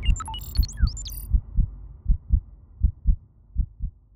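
Heartbeat sound effect: low double thumps (lub-dub) repeating about every three-quarters of a second and fading out. Short electronic glitch chirps and sweeps sound over it in the first second.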